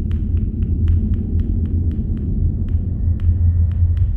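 Ambient soundscape: a deep, steady rumbling hum with irregular sharp crackling clicks, a few each second, over the top.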